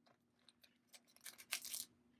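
Needle and thread drawn through the layers of a cardboard cup sleeve: a few faint ticks, then a short scratchy rasp in the second half.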